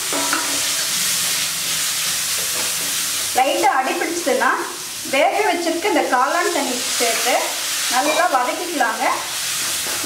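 Chopped tomatoes and masala sizzling in hot oil in a kadai while a wooden spatula stirs them. From about three seconds in, a wavering voice-like tone comes and goes over the sizzle.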